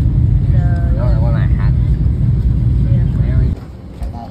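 Steady low rumble of airliner cabin noise in flight, with a voice briefly heard over it. The rumble cuts off suddenly near the end.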